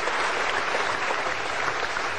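An audience clapping, a steady spell of applause with no voice over it.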